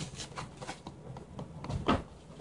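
Faint handling noises of hands being rubbed and brushed off over the work table, with a few light clicks and a louder short scrape near the end.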